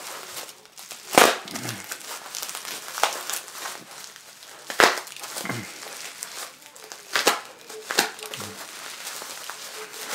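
Plastic bubble-wrap packaging being crinkled and torn open by hand, a continuous crackly rustle broken by about five sharp snaps. The wrapping is heavy and slow to rip open.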